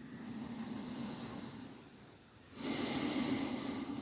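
A person breathing audibly close to the microphone: a softer breath fading away over the first two seconds, then a louder, rougher breath starting a little past halfway.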